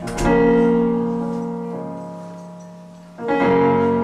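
Electric piano on a Roland stage keyboard playing slow chords: one struck just after the start and another a little after three seconds in, each left to ring and die away.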